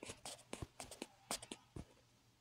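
Fingertip taps and handling of a smartphone: a quick run of about a dozen faint, irregular clicks and scratches.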